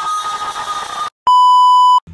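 A hissing sound with a steady high tone cuts off a little past one second in. After a brief silence comes a loud, steady electronic test-tone beep of one pitch, the sort that goes with TV colour bars, lasting about three quarters of a second.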